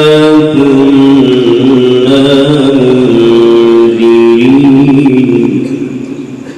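A man's voice reciting the Quran in the melodic tilawat style, amplified through a microphone, drawing out a long held note that steps between a few pitches. It fades away near the end.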